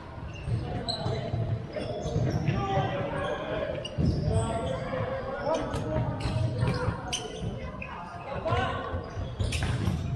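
A futsal ball is kicked and bounces on a wooden indoor court, with scattered sharp knocks, the strongest about four seconds in. Players call out to each other, and everything echoes in a large sports hall.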